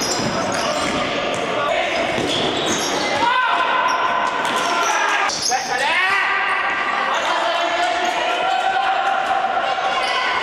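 Futsal ball kicked and bouncing on a hard sports-hall floor, with players shouting to each other. The sound echoes in the large hall, and a long call runs from just past the middle to the end.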